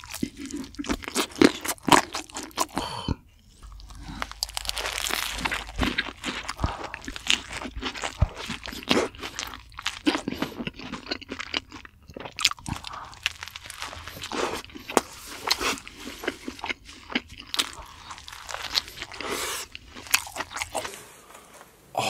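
A person chewing crunchy food close to the microphone, a steady run of crisp crunches and bites with a short pause a few seconds in.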